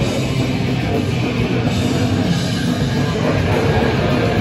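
Goregrind band playing live: heavily distorted guitars and bass over fast drums, one loud, dense and unbroken wall of sound.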